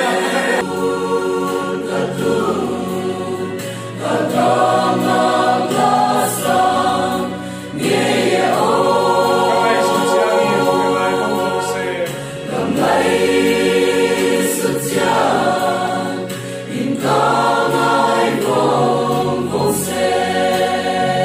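Mixed choir of men's and women's voices singing a gospel song in harmony, in phrases of about four seconds with short breaks for breath between them.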